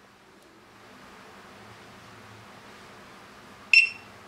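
iSDT SC-620 smart charger giving one short, high-pitched beep near the end, signalling that the 4S LiPo charge is done. Before it there is only a faint steady hiss.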